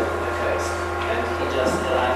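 Faint, distant speech in a room, over a steady low electrical hum.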